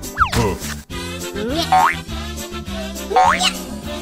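Cheerful children's background music with cartoon sound effects: a falling glide just after the start, then two quick rising whistle-like sweeps about a second and a half apart.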